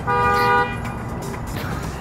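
A car horn honking once, a single steady blast lasting about two-thirds of a second.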